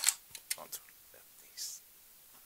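A few light clicks of the V-mount plate's latch and metal parts as the plate is released and slid off the light's controller body. The sharpest click comes at the very start, then a short sliding sound about one and a half seconds in.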